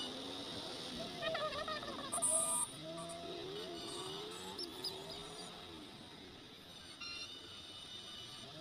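Road traffic heard from a motorcycle riding in slow city traffic: engine sounds rising and falling in pitch, with a short hiss about two seconds in.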